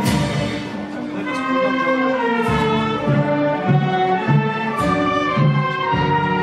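Band music with brass instruments playing a slow piece of long held notes, with sharp crashes every one to two seconds.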